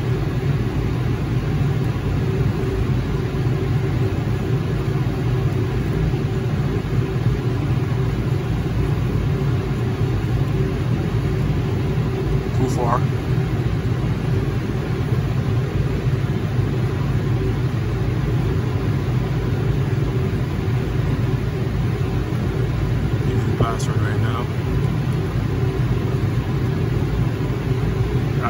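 Steady low drone of a running commercial air-conditioning unit and its machinery, an even hum with constant low tones that does not change.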